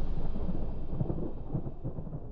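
The long, deep rumbling tail of a boom sound effect, fading steadily away.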